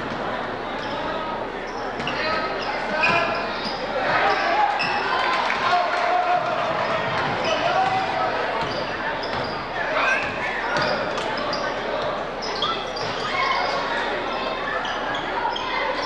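Live high school basketball play on a hardwood court: the ball bouncing, sneakers squeaking in short high chirps, and players and spectators calling out, all echoing in the large gym.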